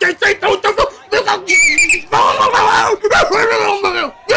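A man's excited vocal exclamations: a quick run of short 'oh' cries, then a long strained shout. About one and a half seconds in there is a brief shrill, wavering squeal.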